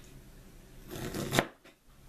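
A knife shaving kernels off a half ear of raw corn. One scraping stroke down the cob about a second in ends in a sharp tap of the blade on the cutting board.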